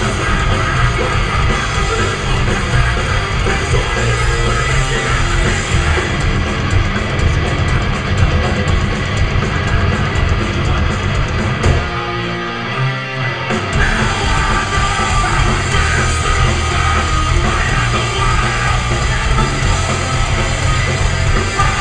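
Hardcore punk band playing live, heard from the audience: distorted electric guitars, bass and drums, loud and dense. About twelve seconds in, the low end drops away for a second or so before the full band comes back in.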